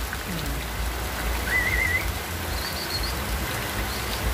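Steady rain falling on roofs and leaves, with water running off the eaves. About halfway through, a brief warbling whistle sounds over the rain.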